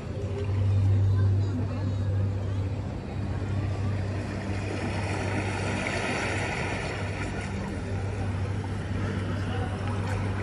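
A steady low hum runs throughout, with faint background chatter from people.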